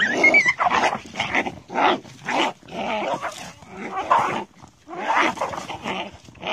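A pit bull fighting a hyena: a string of short, loud animal cries and growls, about two a second, with a brief lull a little past the middle.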